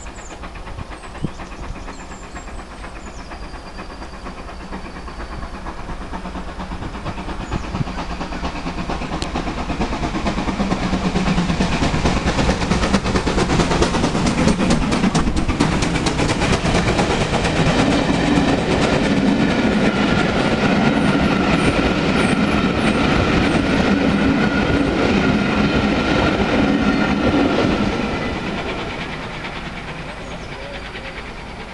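GWR Hall class 4-6-0 steam locomotive 4965 'Rood Ashton Hall' passing at speed with a train of coaches while building up speed: the sound grows over the first ten seconds or so as it approaches, the coaches' wheels run loudly and evenly past for about fifteen seconds, then the sound falls away near the end as the train recedes.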